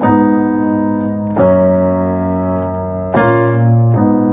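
Sustained piano chords played on a keyboard, three in turn, changing about a second and a half in and again near three seconds. This is the progression voiced with a minor two chord in place of the Lydian major two chord, which sounds sadder.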